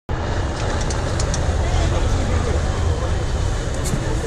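Tatra 815 6x6 trial truck's diesel engine running with a steady deep rumble as the truck crawls over rough ground, with spectators talking nearby.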